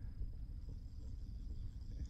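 Low, fluttering rumble of wind buffeting the phone's microphone, with a faint steady high whine underneath.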